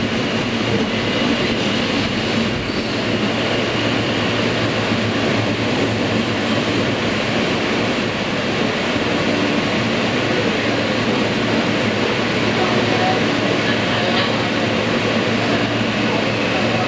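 Steady running noise of a New York City R160A subway car in motion, heard from inside the car: wheels on rail and running gear making an even rumble.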